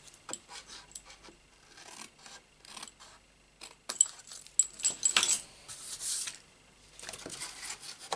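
Scissors snipping thin slivers off the edges of cardstock: a series of crisp snips and scrapes, bunched together about halfway through, with card rustling as it is handled.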